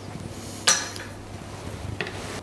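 A single sharp clink of a kitchen knife against a wooden cutting board about two-thirds of a second in, with a short ring, followed by a few faint taps near the end.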